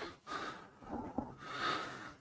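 Faint breathing close to the microphone: three soft breaths, with a small click a little past halfway.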